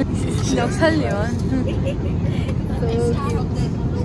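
Steady low drone of a passenger jet's cabin in flight, engine and airflow noise, with voices talking over it.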